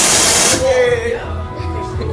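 A sudden loud hiss of blown air, about half a second long, from an attraction's air-blast effect, followed by a short vocal cry, over steady background music.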